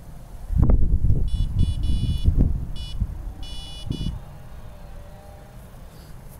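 Electronic carp bite alarm giving quick runs of short, high-pitched bleeps, several bursts over about three seconds, as the line at the rod is moved. Loud low rumbles and thumps lie underneath during the same stretch.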